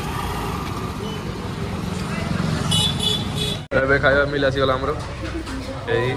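Street traffic with motorbike engines running and a short vehicle horn toot about three seconds in. The sound cuts off abruptly partway through and is followed by people talking.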